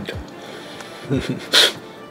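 A man's brief laugh, a couple of short voiced sounds, then a short, sharp breath out about a second and a half in.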